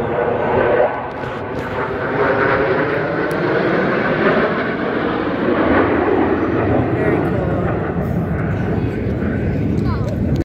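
Jet engine noise from a formation of four military jets flying overhead, a loud, steady rushing sound throughout, with people's voices over it.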